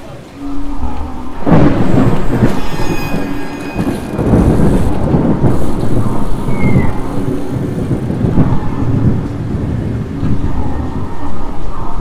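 Thunderstorm: a sudden thunderclap about a second and a half in that rolls and rumbles for several seconds, with a second rumble near the end, over steady heavy rain.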